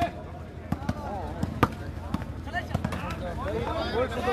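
A volleyball being struck by hand in play: several sharp slaps, the loudest about a second and a half in, over the chatter of a crowd of onlookers.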